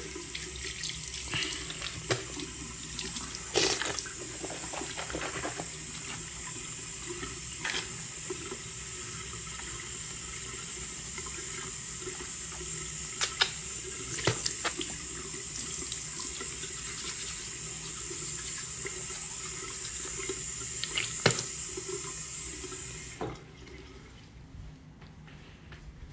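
A water tap running steadily into a sink, with a few short clinks and knocks, then shut off near the end.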